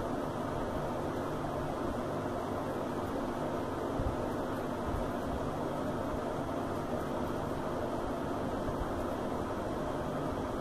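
Steady background hum and hiss, like a fan or room noise, with no distinct events.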